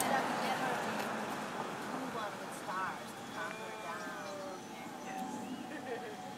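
Talking voices over steady background noise, with no clear non-speech event.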